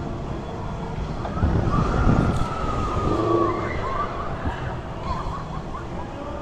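Street traffic rumbling by, with a siren giving one long, gently falling wail from about a second in to past the middle.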